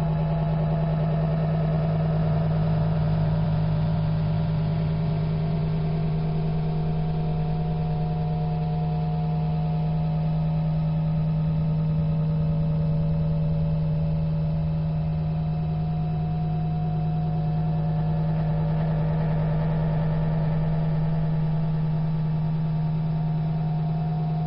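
A steady low drone, one strong unchanging tone with fainter higher tones drifting in and out above it, sounding heavily compressed.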